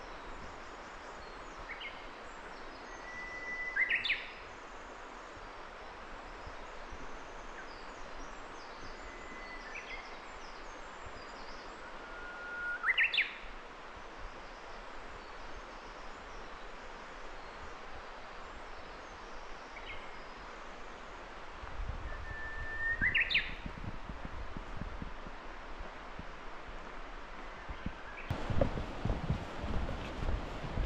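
A songbird singing in the forest, repeating one phrase three times about nine seconds apart: a long steady whistled note that ends in a quick sharp upward flourish. Footsteps thud on the path toward the end.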